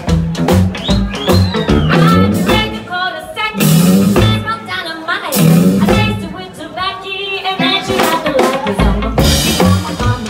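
Live rockabilly band: a woman singing over electric guitar and a drum kit with a steady beat, with two loud cymbal crashes about three and a half and five and a half seconds in.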